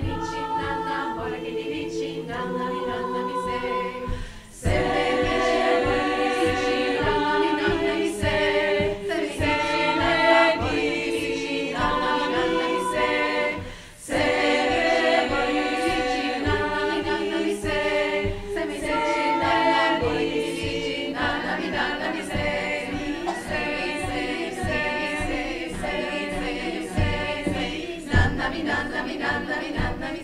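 Women's choir singing a cappella in sustained, shifting harmony, with two brief breaks between phrases, about four seconds in and again about fourteen seconds in.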